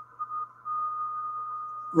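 QRSS radio beacon's carrier received on a KiwiSDR receiver, heard as a steady whistle-like tone in the receiver's audio. It is broken by short gaps for about the first half second, then held steady over faint hiss and a low hum.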